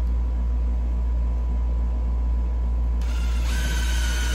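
A steady low hum, then about three seconds in a cordless drill starts with a whine, driving a three-quarter-inch self-tapping screw through a steel lazy Susan turntable plate into a wooden board.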